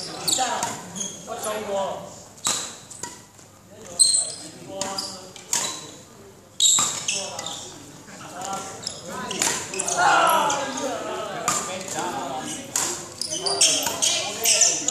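Court shoes squeaking and footfalls thudding on an indoor badminton court floor during shadow footwork runs: irregular sharp stamps of lunges and recoveries, echoing in a large hall.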